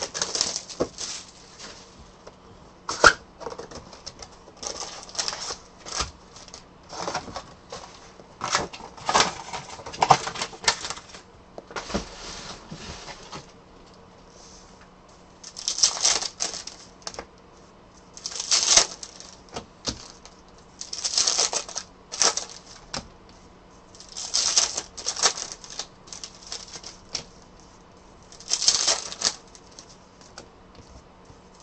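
Plastic shrink wrap and foil trading-card pack wrappers crinkling and tearing under the hands, in many short crackling bursts; in the second half they come in clusters every two to three seconds as packs are ripped open one after another.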